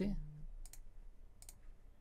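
Computer mouse clicking a few times, once a little under a second in and again at about a second and a half.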